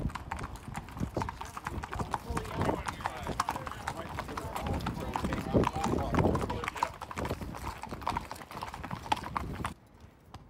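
Hooves of several horses clip-clopping on pavement at a walk, a dense, irregular run of sharp strikes, with people talking among the riders. The sound cuts off abruptly near the end.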